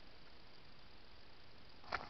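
Faint steady hiss from a trail camera's microphone, broken just before the end by a sudden short burst of rustling and clicks.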